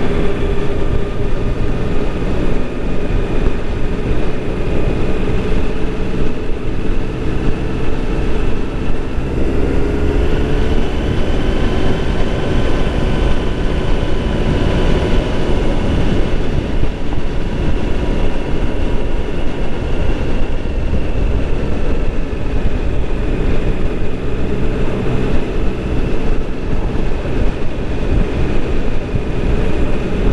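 Vehicle engine running at a steady cruise, with road and wind noise; the engine note rises a little about nine seconds in and then holds.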